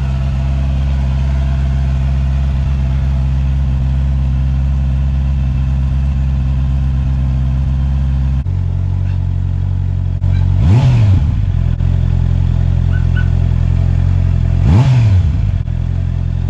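Honda CB650R's 649 cc inline-four engine idling steadily through its factory muffler, then revved briefly twice in the second half, the pitch rising and falling back each time.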